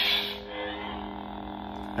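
Sound-board lightsaber's hum from its built-in speaker, a steady electric drone. It follows the ignition, whose noisy burst fades out in the first half second.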